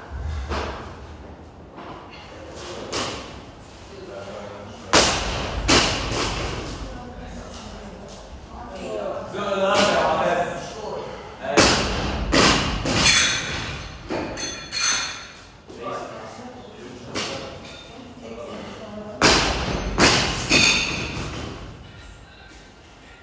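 Loaded barbell with rubber bumper plates set down and dropped on rubber gym flooring during repeated lifts: several heavy thuds with a short metallic ring, in pairs and clusters about five seconds in, near the middle and near the end, echoing in a large room. A voice is heard briefly between the lifts.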